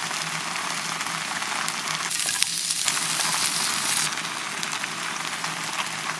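Fish pieces sizzling hard in a very hot enamelled cast-iron pot, the crackling sizzle of a jue jue fish pot cooked dry with no water and little oil. The sizzle swells louder for about two seconds, starting two seconds in.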